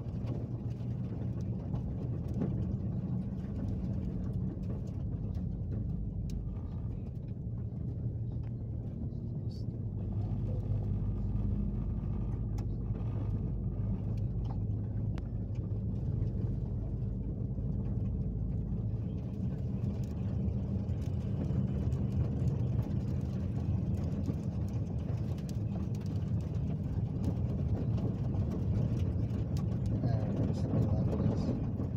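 Four-wheel-drive vehicle driving slowly along a soft dirt track, heard from inside the cabin: a steady low engine and tyre rumble with a few light knocks and rattles from the uneven ground, growing a little louder about ten seconds in.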